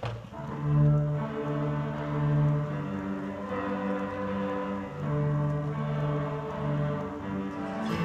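Student string orchestra of violins, cellos and double bass playing, with long bowed notes that change every second or two.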